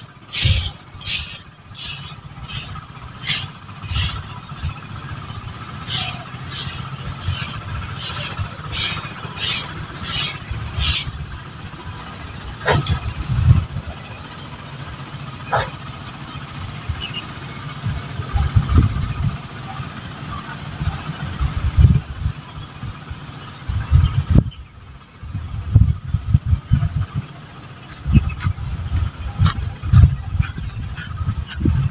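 Broom sweeping dry leaves and grit across packed dirt, with scratchy strokes about two a second that pause briefly about five seconds in and stop about eleven seconds in. After that come scattered low knocks and rustling as the leaves are gathered up by hand.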